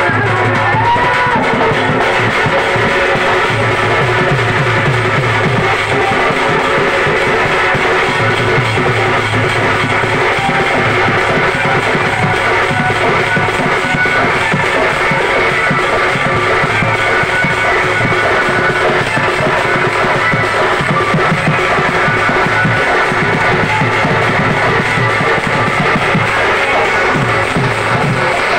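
Live folk music: a double-headed barrel drum (dhol) beaten in a steady rhythm under a melody of long held notes.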